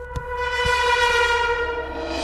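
A single steady held note with many overtones, swelling gradually louder and brighter, part of the film's background score leading into the music. Two soft knocks come early on, about a quarter and two thirds of a second in.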